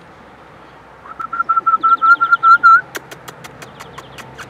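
A rapid run of high-pitched chirping squeaks at one steady pitch, about seven a second for nearly two seconds, then a quick regular series of sharp clicks about five a second near the end.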